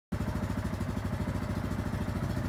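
Yamaha Wolverine R-Spec side-by-side's engine idling with a steady, low, rapid pulsing.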